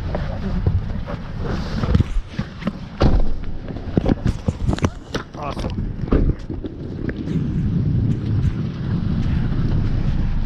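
Wheeled suitcase being pulled out and rolled across a parking lot: a string of knocks and clicks as it is handled, then from about seven seconds a steady low rumble of the wheels on the asphalt, with wind on the microphone.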